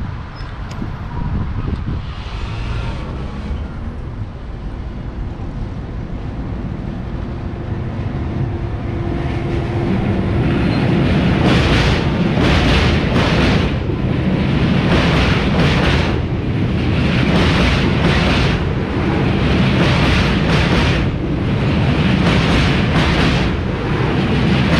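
Passing passenger train hauled by a Bombardier TRAXX MS2 electric locomotive: a rumble that grows louder as the train approaches. From about halfway it carries on with a run of rhythmic clatter as the wheels of the locomotive and coaches pass close by.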